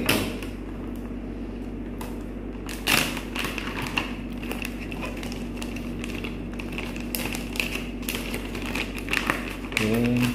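Clear plastic packaging around a rubber mudflap being picked up and handled, crinkling and crackling, with a few sharp knocks at the start and a second or two in, and a dense run of crackling in the last few seconds.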